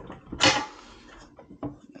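A short metal scrape about half a second in as the axle spacer is slid over a scooter's front axle, followed by a couple of faint clicks near the end.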